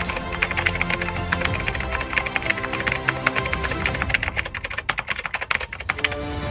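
Background music with sustained tones under a fast run of keyboard-typing clicks, a sound effect as text is typed out. The clicks thin out near the end.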